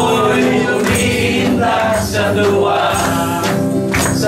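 A gospel song sung by a group of voices, led by a man singing over his own electric guitar, with a beat struck about once a second.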